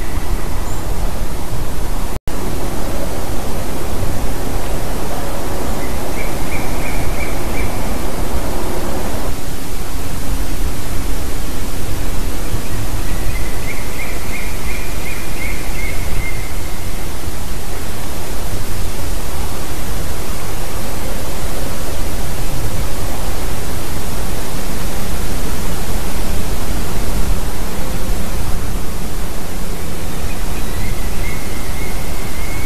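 Loud, steady wind noise on the microphone, with a bird calling twice in quick runs of short, high, repeated notes lasting two to three seconds each. The sound cuts out for an instant about two seconds in.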